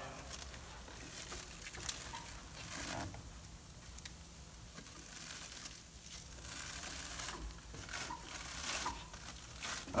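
Plastic cling wrap crinkling and stretching as it is pulled off the roll and wound around a tire, quiet and irregular with small crackles.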